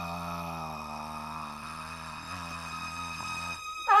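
A deep male cartoon voice holding one long, steady open 'aah' note with a slight waver, breaking off shortly before the end. A short, louder 'ah' with a swooping pitch comes right at the end.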